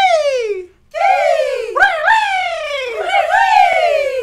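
A group of voices calling out high syllables of a vocal warm-up in unison, such as 'pay' and 'key'. There are about four calls, each sliding down in pitch, sung near the top of the voice's register.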